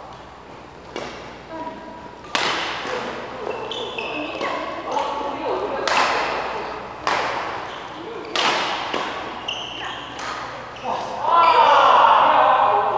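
Badminton rackets striking a shuttlecock in a rally: a string of sharp hits, about one every half second to a second, each ringing in the large hall, with short squeaks of shoes on the court floor between them.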